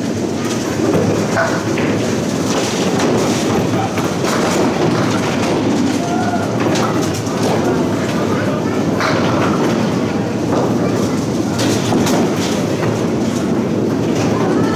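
A Bowl-Mor candlepin pinsetter running a reset cycle: the sweep board clears the fallen pins and the machine clatters and rumbles steadily, with scattered knocks, as it sets a new rack of ten pins.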